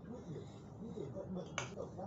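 Faint talk in the background, with one sharp click or snap about one and a half seconds in.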